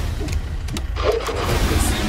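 Vehicle pulling away fast: engine running and tyres spinning on dirt, a dense low rumble with scattered clicks.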